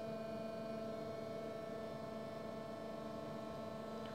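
Variable-speed hydraulic pump unit running with a steady hum of several held tones, working against a load pressure that is being raised toward 30 bar.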